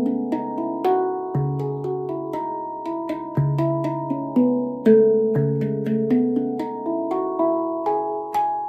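MASH stainless-steel handpan in the C# Annaziska 9 scale played by hand: a continuous flow of struck, ringing notes, with the deep low note sounding about every two seconds under the higher tone fields.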